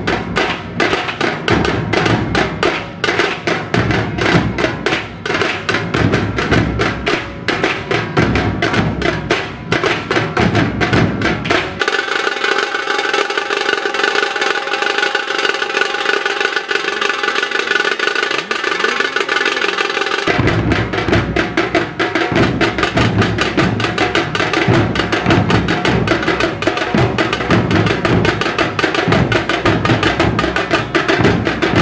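Fast, loud drumming in a steady rhythm. About twelve seconds in the drums drop out for roughly eight seconds, leaving only sustained higher tones, then the drumming comes back.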